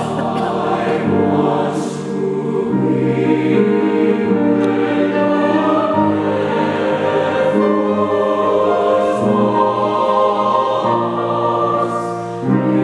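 A mixed choir of men's and women's voices singing a slow choral piece in held chords that change every second or two.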